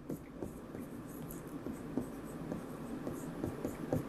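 Stylus writing on an interactive display board: a quiet run of small, irregular taps and scratches from the pen tip on the screen.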